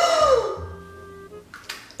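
A woman's sharp cry of pain, rising then falling in pitch and fading within about half a second, as the eyeliner pencil goes into her eye. Background music with a steady low beat runs underneath.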